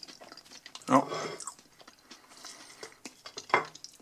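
A person chewing a mouthful of crispy oven-baked potato pancake, then a metal fork cutting into another pancake with a sharp clink on the ceramic plate about three and a half seconds in.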